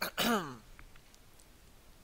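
A man's voice: a short hesitant "äh" that falls in pitch, then near silence.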